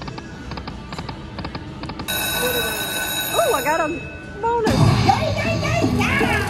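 Chica Bonita video slot machine sounds as a spin triggers the free-games feature. Faint clicks of the reels stopping are followed by a steady, high, bell-like ringing from about two seconds in while the last reel spins. A louder burst of celebratory machine music comes in near the end as eight free games are won.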